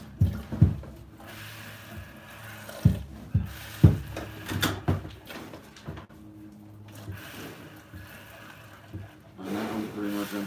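Milk squirting from a cow's teat into a plastic bucket during hand-milking, in short irregular spurts a couple a second, over a faint steady hum.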